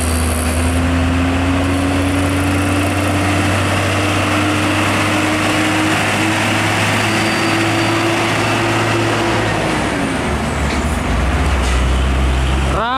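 Hino 500 truck towing a loaded trailer driving past, its diesel engine pulling under load with a pitch that climbs slowly for about ten seconds, then drops near the end. Tyre and road noise runs under it.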